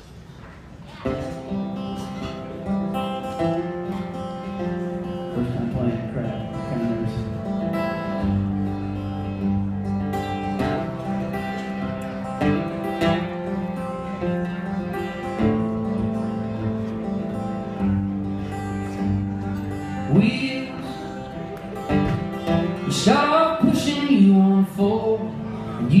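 Two acoustic guitars play a song's instrumental introduction, starting about a second in after a brief pause. A voice comes in near the end.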